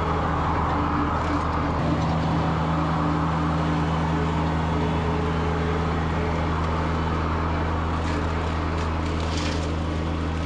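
Kubota BX compact tractor's three-cylinder diesel engine running steadily under load, driving a Land Pride rotary cutter (bush hog) through tall weeds.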